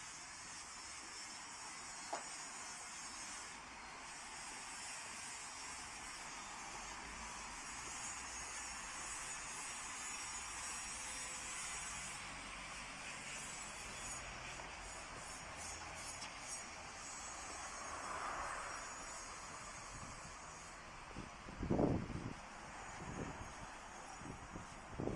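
Quiet outdoor alley ambience: a faint, steady high-pitched hiss, with a few short gusts of wind buffeting the microphone near the end.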